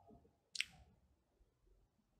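Near silence with a single short, sharp click about half a second in.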